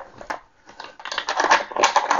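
Rapid small plastic clicks and rattles of nylon toilet-seat bolts and hinge parts being slid into the bowl's mounting holes, starting a little over half a second in and running on as a close run of clicks.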